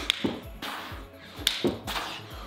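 Sharp hand claps from clapping push-ups, two of them about a second and a half apart, over background music with a steady low beat.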